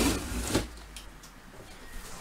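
Cardboard box flaps being handled and folded open: cardboard rubbing and scraping, with a sharp knock about half a second in, then quieter.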